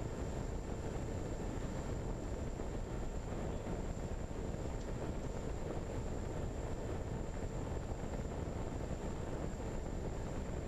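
Steady rush of wind over a fixed-wing RC plane in flight, with faint steady high tones underneath.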